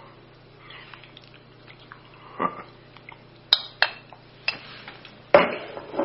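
A few light, sharp clinks of a utensil against a dish, with a softer knock before them and a brief rustle near the end, over a low steady hum.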